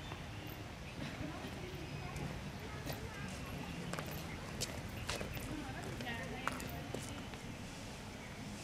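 Indistinct voices of a group of people talking, with a scatter of short, sharp clicks and taps in the middle seconds.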